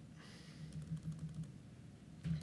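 Faint, scattered keystrokes on a computer keyboard as text in a search field is cleared and retyped.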